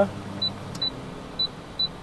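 Induction cooktop being adjusted: a low electrical hum cuts out about halfway through as the power is turned down, with short high pips repeating about every half second.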